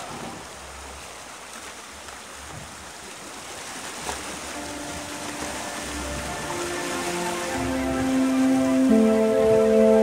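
Rushing river water over shallow rocky rapids, heard as a steady hiss. Background music fades back in over the second half and is loud near the end.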